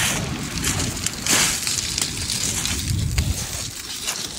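Surf washing on a shingle beach, with wind on the microphone. A louder rush comes about a second in.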